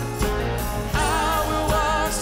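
Live worship band music with a woman singing lead; her held, wavering sung notes come in about halfway through over the band.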